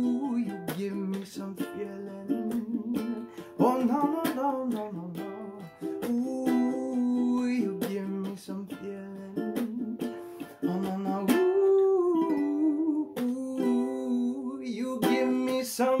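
Ukulele strummed in a steady rhythm, with a man's voice singing long, sliding held notes over it.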